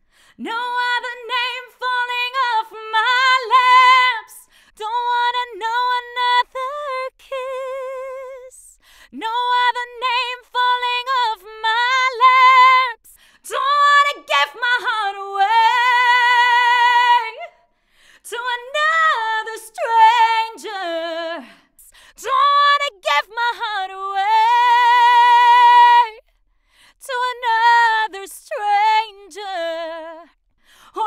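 A woman singing a slow ballad unaccompanied, in phrases broken by short pauses, with wide vibrato on long held notes.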